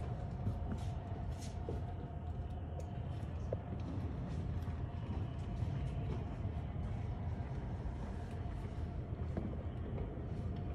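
Steady outdoor street ambience: a low rumble of idling emergency vehicle engines under a faint steady hum, with indistinct voices in the distance.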